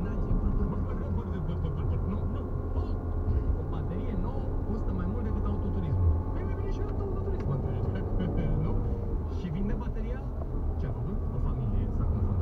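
Steady low rumble of a car driving, heard from inside the cabin, with indistinct talking over it.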